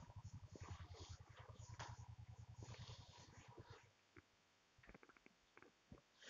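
Faint rubbing of a duster wiping a whiteboard, a few soft scrapes that die away after about four seconds into near silence.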